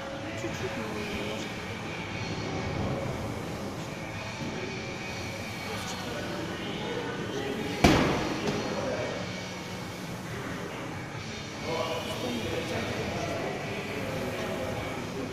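A medicine ball thrown in a wall-ball shot strikes a plywood wall once with a sharp thud a little past halfway, followed by a smaller knock about half a second later, over background voices.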